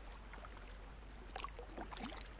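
Faint river ambience at water level: a steady wash of moving water with scattered small splashes and ticks.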